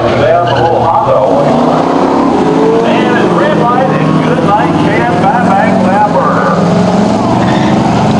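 Drag-racing cars, one of them a stock-engined all-wheel-drive Honda Civic, launching off the start line and accelerating hard down the eighth-mile strip, engines running loud throughout. Spectators' voices are heard over the engines.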